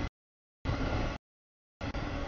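Rumble of freight cars rolling past on the rails, cut up by audio dropouts into short stretches about half a second long with dead silence between them.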